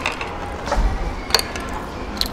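A few sharp clicks of tableware during a meal, the loudest about a second and a half in, with a low thump shortly before it, over quiet background music.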